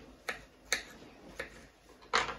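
Kitchen knife slicing through peeled mango and knocking on a wooden chopping board, three short knocks.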